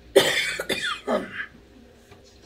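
A man coughing and clearing his throat, one burst of about a second and a half just after the start, close to the microphone.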